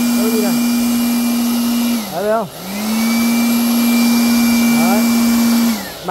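Handheld 1000 W, 220 V electric blower-vacuum running at full speed in blow mode with a steady whine and rush of air. About two seconds in the motor is switched off and winds down, then spins back up to full speed, and it winds down again near the end.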